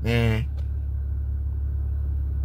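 Steady low rumble of a car heard from inside the cabin, after a brief spoken sound at the start.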